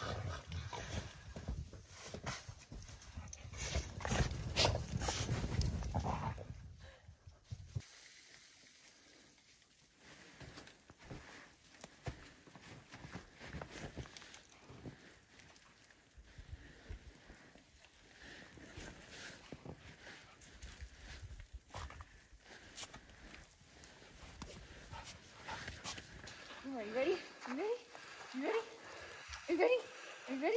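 Crunching and thudding of feet and digging in deep snow for the first several seconds, then faint scattered snow sounds. Near the end, a quick run of short rising yips and whines from dogs at play.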